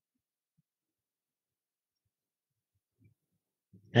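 Near silence, with a narrating voice starting just before the end.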